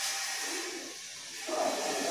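Chalk scratching on a blackboard as letters are written, over a steady hiss.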